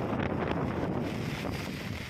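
Wind buffeting the microphone as a steady rumble, over the wash of floodwater as people wade through it pushing a float raft.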